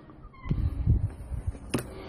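Front door being opened and passed through: a brief squeak, rumbling handling noise on the phone's microphone, and a sharp click near the end.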